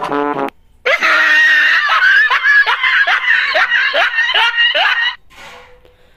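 Recorded laughing sound effect played back from a YouTube clip. A short pitched burst comes first, then about four seconds of loud, high-pitched laughter in quick repeated 'ha' pulses, roughly two or three a second. It cuts off suddenly about five seconds in.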